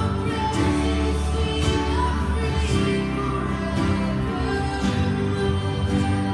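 Steel-string acoustic guitar playing a slow song's chord progression, in a full music mix with steady bass.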